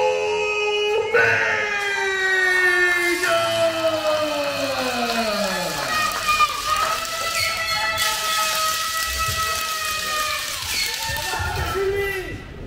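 A ring announcer's drawn-out call of the champion's name: long held notes that slide slowly down in pitch, over background music. A rush of cheering and applause from the crowd rises about two-thirds of the way in.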